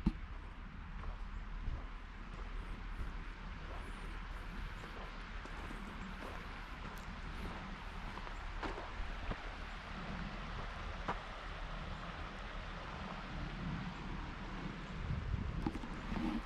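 Steady rushing hiss of a river flowing past, with a low wind rumble on the microphone and a few faint clicks.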